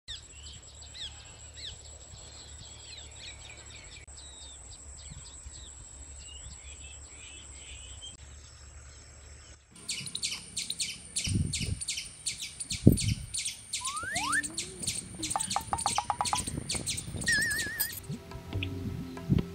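Birds chirping and twittering over a thin steady high tone for about ten seconds. Then the sound changes abruptly to a fast, even, high pulsing chirp, about three a second, with a few low thuds and a short rising whistle.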